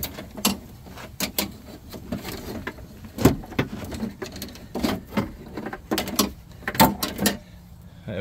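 Irregular clanks, knocks and rattles of a Jeep Grand Cherokee WJ's cable-type window regulator, with its metal track, cables and motor, being handled and worked out through the opening in the door's inner shell.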